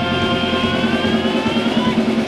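Live hard rock band playing an instrumental passage between sung lines: electric guitars, bass and drums, with held lead notes that slowly rise in pitch.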